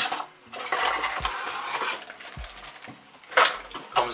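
Crinkling of plastic packaging and light clattering as accessories are handled and pulled out of a cardboard box, with a louder clatter about three and a half seconds in.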